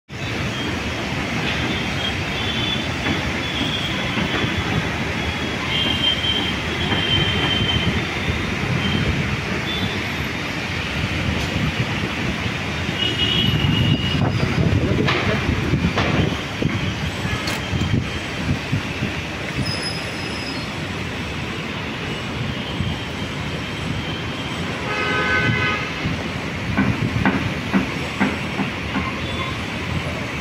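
A steady, loud rumbling noise with brief high squeals now and then, and a short pitched tone with overtones about 25 seconds in.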